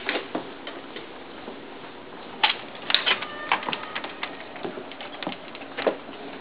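Clicks and knocks of a door's latch and deadbolt as it is unlocked and opened, with a short faint squeak about three seconds in.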